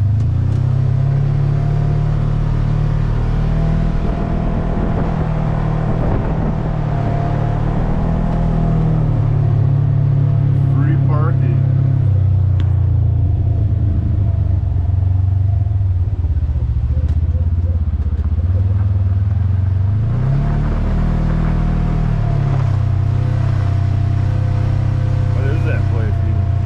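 Polaris General XP 1000 side-by-side's parallel-twin engine running as it drives slowly, heard from the cab. Its pitch shifts with speed, with a brief rise about twenty seconds in.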